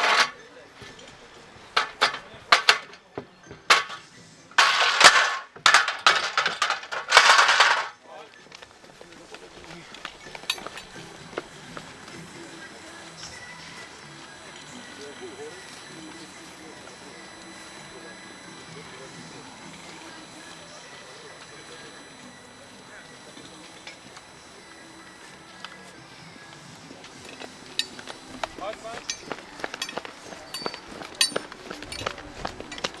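Clanks and knocks from a firefighter's boots and gear on an aluminium ladder leaned against a wooden wall, with a few loud noisy bursts about five to eight seconds in. After that comes a low, steady background until quick running footsteps on wet asphalt start near the end.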